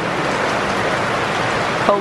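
Steady rain falling on wet paving and parasols, an even, unbroken hiss.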